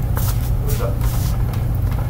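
Flip-flop footsteps slapping on a bare concrete floor, about two steps a second, over a steady low hum.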